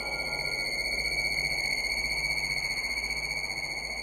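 Electronic stage score: a steady, high, sonar-like tone held over a low drone, with a soft low note pulsing on and off about once a second.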